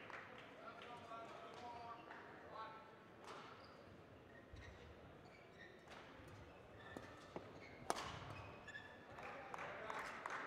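Badminton rally: a few sharp racket hits on the shuttlecock, the loudest about eight seconds in, with short faint squeaks.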